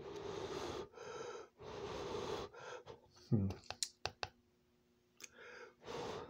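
A person huffing out breath over very hot food, three breathy puffs in the first two and a half seconds. Then a short low grunt and a few light clicks.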